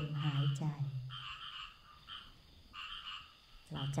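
Frogs calling: groups of short, rapidly repeated croaks, clearest in the pause between a woman's spoken words.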